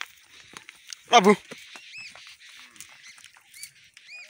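Water buffalo herd moving along a dirt track, with one short, loud pitched call about a second in. A bird gives short arched calls twice later on, over a faint high background hiss and scattered small clicks.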